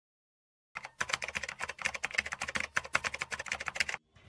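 Rapid, dense clicking like keyboard typing, many clicks a second, starting under a second in.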